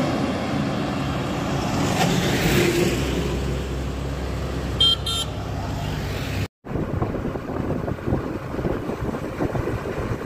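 Highway traffic: a heavy truck passes close by with its engine running and tyre noise, and a vehicle horn gives a short toot about five seconds in. After a sudden cut, rumbling road and wind noise from a moving vehicle follows.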